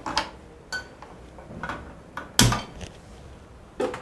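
Sharp clicks of a hand-held spark gas lighter being worked at a gas stove burner, several separate clicks spread out, with one louder, deeper knock about two and a half seconds in.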